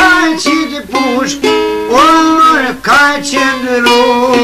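Albanian folk music on a çifteli: a plucked two-string lute playing a melody with pitch slides over a steady drone note.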